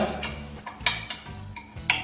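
A few sharp metal clinks of an allen key working the bolts of a Beaver 300 floor scraper's steel dolly clamp, over soft background music.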